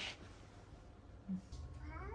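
Short 'mmh' sounds from a voice, the last one gliding up in pitch, against faint room tone with a low steady hum coming in about halfway through.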